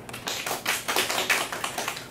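Brief applause from a small group of people clapping, which dies away near the end.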